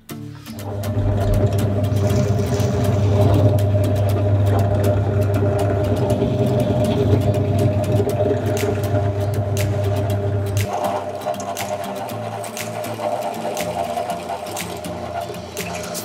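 Benchtop drill press running, its twist bit boring holes in plywood, with music playing underneath. The steady low motor hum changes about ten seconds in.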